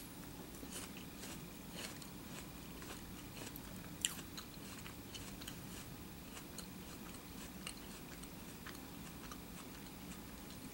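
Faint crunching and smacking of a person chewing a mouthful of crisp raw apple, an apple soaked in artificial grape flavouring, with one louder crunch about four seconds in.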